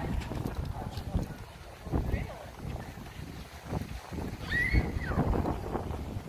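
Indistinct voices of passers-by, with wind buffeting the microphone in low, irregular gusts.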